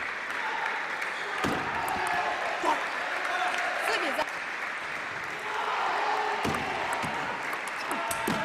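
Audience applauding in a hall, with a voice talking over it and two sharp knocks about five seconds apart.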